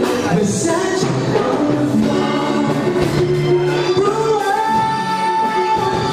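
A man singing a slow R&B ballad into a microphone over instrumental accompaniment, holding a long note in the second half.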